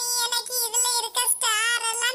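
A very high-pitched, child-like voice singing in held notes that bend up and down, with brief breaks between phrases.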